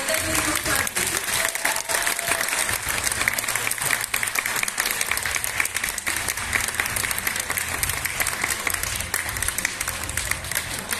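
Audience applauding: steady, dense clapping.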